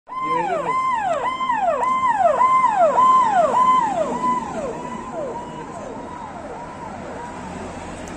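Police vehicle siren sounding a fast repeating wail: each call jumps up to a held high note and then slides down, nearly two calls a second. It grows fainter after about four seconds.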